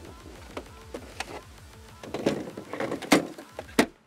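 Plastic clicks and knocks as a battery pack is unlatched and lifted out of a Kress battery lawnmower, with the sharpest clacks a little after three seconds and just before the end.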